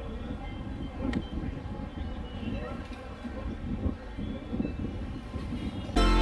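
Open-air ambience of an athletics ground: faint, indistinct voices over an uneven low rumble, with an occasional click.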